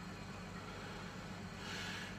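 Faint, steady background hiss with a low hum underneath, and no distinct event.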